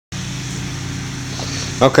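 A steady low mechanical hum, several low pitches held level without change. A man's voice starts near the end.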